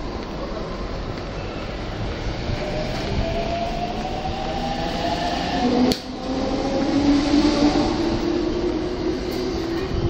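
JR Chuo-Sobu Line E231-series commuter train pulling out of a station, its traction motors whining higher and higher as it speeds up over the rolling rumble of the cars. A single sharp click comes about six seconds in.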